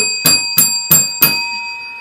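A chrome desk service bell struck five times in quick succession, about three rings a second, the ringing tone lingering and fading after the last strike. It is rung to mark a sale.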